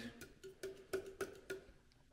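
A quick run of faint light taps or clicks, each with a short ring, several a second, thinning out near the end.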